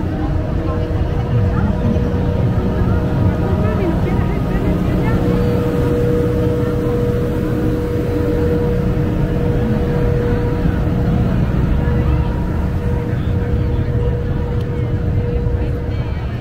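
Engine-driven generator running steadily, a constant hum with a strong tone, under the chatter of a crowd.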